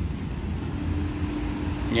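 Steady low outdoor rumble, with a faint steady hum joining about halfway through.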